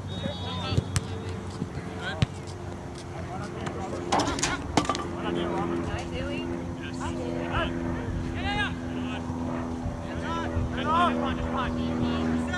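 Outdoor soccer-match ambience: scattered distant shouts from players and the sideline, and a few sharp knocks about four seconds in. A steady machine hum grows louder from about halfway through.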